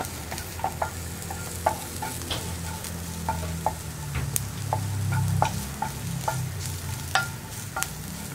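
A wooden spatula stirring and scraping sliced onions, green chillies and curry leaves frying in a nonstick pan, making many light taps and clicks against the pan, over a steady low hum.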